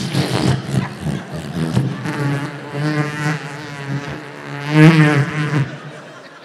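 A man making balloon noises with his voice into a microphone, imitating inflatable Christmas lawn decorations: buzzing, sputtering sounds with a wobbling pitch, loudest about five seconds in.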